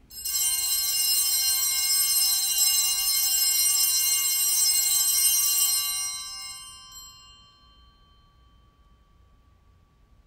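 Altar bells (a cluster of small sanctus bells) shaken and rung steadily for about six seconds, then left to ring out and fade. They signal the elevation of the consecrated host.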